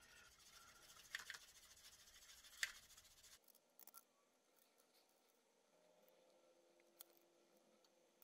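Near silence, with faint small clicks and scrapes for the first three seconds or so as a metal stirring tool mixes paint in a plastic palette. One faint tick comes near the end.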